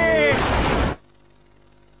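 A man's long drawn-out cartoon shout of "Sì!", slowly falling in pitch, runs into a loud rushing crash noise that cuts off suddenly about a second in. It is then quiet for about a second.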